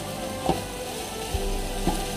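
Diced chicken breast and onions sizzling in a frying pan, with a few short knocks of the wooden spatula against the pan, under background music.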